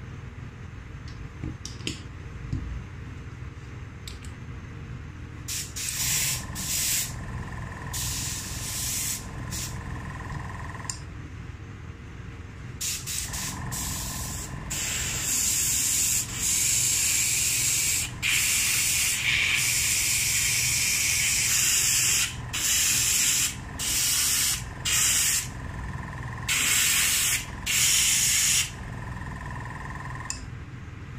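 Airbrush spraying white cocoa butter, fed by a compressor set at 50 psi. The hiss comes in a few short bursts starting about six seconds in, then one long steady spray, then several more short bursts near the end, with a faint steady tone under the hiss.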